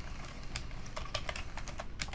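Computer keyboard typing: a quick, irregular run of keystrokes as a word is typed out.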